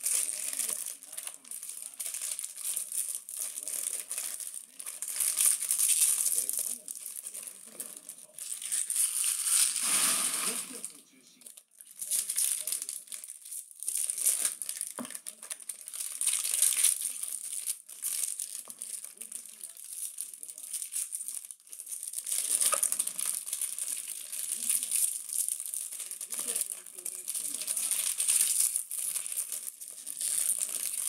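Foil trading-card pack wrappers crinkling and tearing as packs are ripped open by hand, in irregular bursts of rustling with a longer, fuller burst about ten seconds in.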